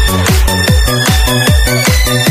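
Electro dance remix of a TVB drama theme song: a steady, fast kick drum, about four beats a second, each with a falling low bass thud, under held synth tones.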